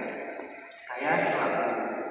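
A man's voice speaking through a microphone and loudspeakers in a hall, with a short pause about half a second in before the speech resumes.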